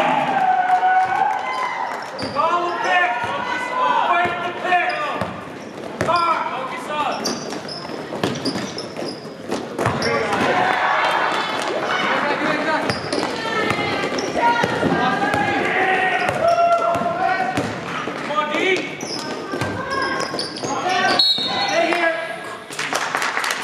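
Live basketball game in a gym: the ball thudding as it is dribbled on the court floor, with players and spectators calling and shouting over one another throughout.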